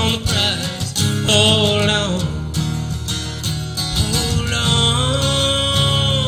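A steel-string acoustic guitar strummed steadily under a man's voice singing long, drawn-out notes that slide in pitch, in a slow folk-gospel song.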